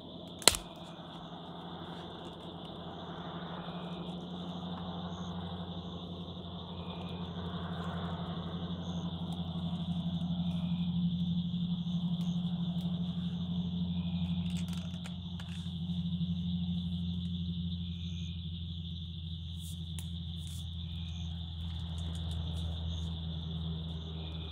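A steady, high-pitched chorus of night insects fills the background, with one sharp click about half a second in. A low steady hum runs underneath and grows louder through the middle.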